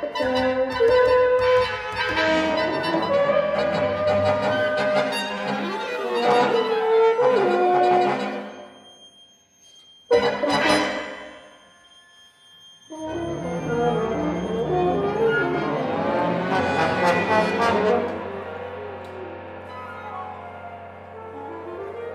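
Contemporary chamber ensemble with solo horn playing dense, gliding microtonal lines that die away about nine seconds in. A sudden loud stroke about ten seconds in rings and fades. After a short pause the ensemble comes back in, thinning to held tones near the end.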